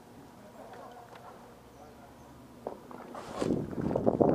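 Quiet outdoor background, then from about two and a half seconds in a quick, uneven run of footsteps with knocks and rattling of gear that grows loud near the end.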